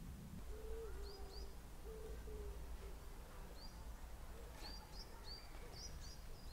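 Birds calling faintly. A low pitched call comes in short notes during the first half, and small birds give high, short chirps that come more often near the end.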